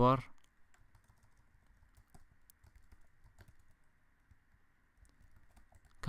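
Computer keyboard typing: a few faint, scattered keystrokes over a faint steady hiss.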